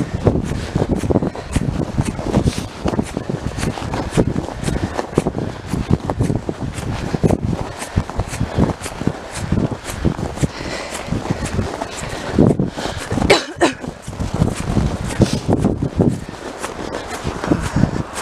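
Footsteps on a snow-covered road at a walking pace, about two steps a second, with a low rumble beneath. A brief pitched sound cuts in about two-thirds of the way through.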